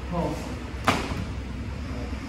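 A single sharp smack of contact between two karate practitioners about a second in, during a grab-escape drill, over a low steady room hum.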